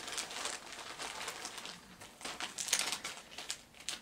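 Crinkling and rustling of a cross-stitch project bag and its contents being handled and opened, in irregular bursts during the first second and again around two to three seconds in.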